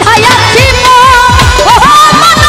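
Live Bengali folk (baul/dhamail) music played loud: a woman's voice singing over hand drums whose strokes bend down in pitch, with a held, wavering melody line on top.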